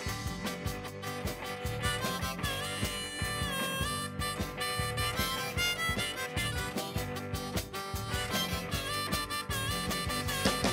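Harmonica solo in a live blues band, played from a neck rack, with bending notes about three seconds in, over electric guitar and a drum kit keeping a steady beat.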